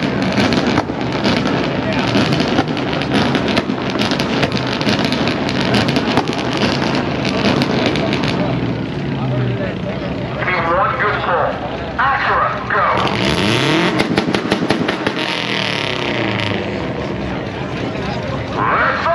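Drag-race car engines revving hard and running, with rapid cracking pops from the exhausts, pitch rising and falling around two-thirds of the way in; crowd voices mixed in.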